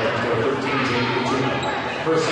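Gymnasium sound during a basketball game: many overlapping voices from the crowd, benches and players, with a basketball bouncing on the hardwood court.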